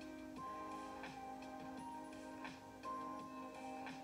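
Soft background music: a held low tone under slow, sustained higher notes, with light ticks roughly every half second to second.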